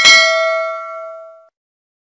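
A single bell chime sound effect, the notification-bell ding of a subscribe-button animation. It is struck once and rings out with several clear tones, fading away within about a second and a half.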